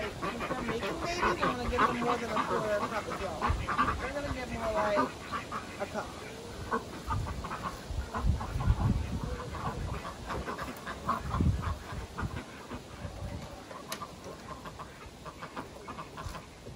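Ducks quacking for the first five seconds or so, then scattered clicks and knocks of a plastic feed scoop against a wooden rabbit hutch's feeders.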